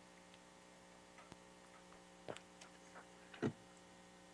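Faint, steady electrical hum with a few soft clicks.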